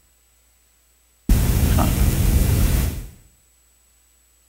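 A burst of loud static-like hiss cuts in suddenly about a second in and fades out near three seconds; before it there is near silence with a faint hum.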